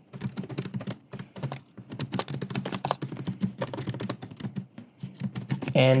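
Typing on a computer keyboard: a rapid, irregular run of key clicks as a line of code is entered.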